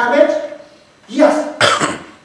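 A person's voice, then a cough about a second in: two short, harsh bursts.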